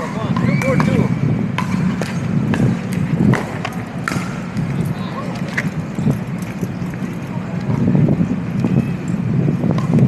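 Pickleball paddles hitting the hard plastic ball in a rally: a series of sharp pops, mostly in the first half. Under them run a steady low city rumble and indistinct voices.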